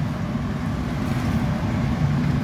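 Steady, low roar of a glassblowing studio's gas-fired furnaces and glory hole together with shop fans, unchanging throughout.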